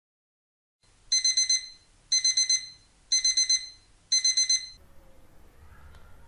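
Electronic alarm-clock beeping from a quiz countdown timer, signalling that the answer time is up. It comes as four bursts of rapid high-pitched beeps, about one burst a second, starting about a second in and stopping near the end.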